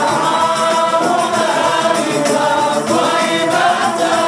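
A group of men singing a qasida together into microphones, the voices holding long wavering melodic lines in maqam Siqa.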